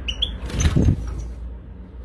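Two short high chirps from a European goldfinch just after the start, then a brief rustling bump a little over half a second in, over a steady low rumble.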